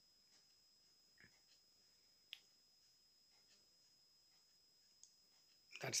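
Near silence with three faint, isolated clicks from computer input as numbers are entered into a running program. The sharpest click comes about two seconds in. A man's voice starts right at the end.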